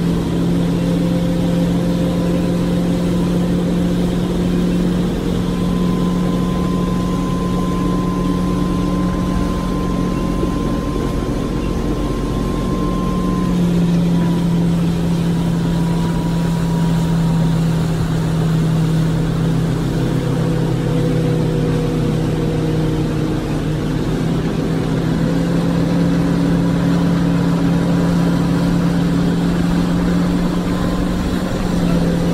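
Motorboat engine running steadily at towing speed, its hum dipping slightly in pitch about halfway through, over the constant rush of the wake and wind.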